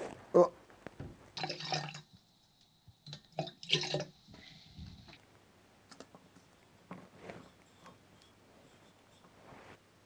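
Distilled water poured from a plastic jug to top a freshly mixed developer solution up to 200 ml, in two short splashy pours. Faint knocks and clicks follow near the end.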